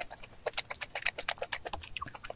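A person chewing a mouthful close to the microphone: a fast, irregular run of small wet clicks and smacks, several a second.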